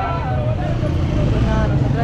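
A person's voice over the steady low rumble of a nearby idling vehicle engine.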